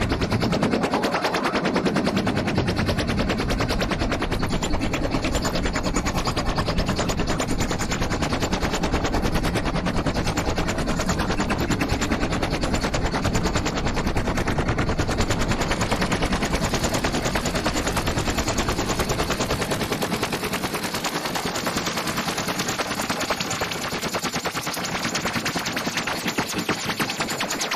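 Korg analogue synthesizer playing a fast, rapidly repeating pulse, a rattling stream of many clicks a second, held steady throughout. Its sound is reshaped as the front-panel knobs are turned by hand.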